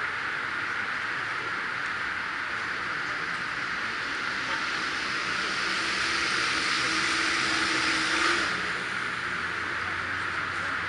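Steady outdoor background noise, with a motor vehicle's sound building from about four seconds in, carrying a low steady hum, and cutting off abruptly a little past eight seconds.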